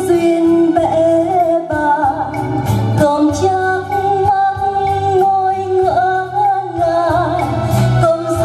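A woman singing a slow Vietnamese ballad live into a microphone, holding long notes with vibrato, backed by a small band with electric guitar and keyboard.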